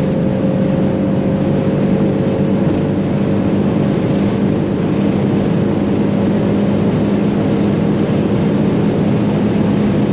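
Cabin sound of a 750 hp tuned Audi RS7 C8's twin-turbo V8 pulling hard in seventh gear past 300 km/h. The engine drone holds steady under heavy wind and road noise.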